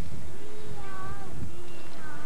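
One long drawn-out shout, a single voice calling out for about a second and a half, its pitch sagging slightly toward the end, over a steady low rumble.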